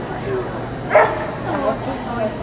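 A dog barks once, sharply, about a second in, over background chatter.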